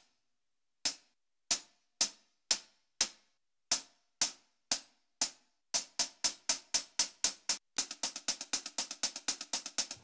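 120 BPM hi-hat loop samples previewed one after another. First come single crisp hits, about two a second on the beat. From about six seconds in a faster pattern runs at about five hits a second, and near the end a busier, denser hi-hat groove plays.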